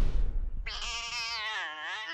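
A loud bang dies away, then a cartoon cat gives one long, wavering yowl from about two-thirds of a second in, lasting about a second and a half.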